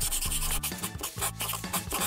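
Paintbrush rubbing across canvas in a quick run of short strokes, over background music.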